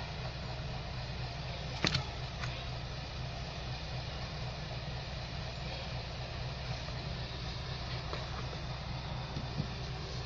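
A knife knocking and scraping against a plastic plant pot as damp soil is dug out, with one sharp knock about two seconds in and a few faint ticks later, over a steady low hum.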